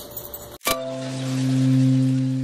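Outro logo sting: a sharp click at the cut, then a deep, sustained bell-like tone that swells and begins slowly to fade.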